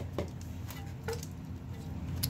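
A few light clicks and taps from a plastic container filled with orchid bark being handled, over a low steady hum.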